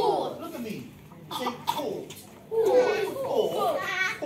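Young children's voices speaking in a few short phrases with brief pauses between them.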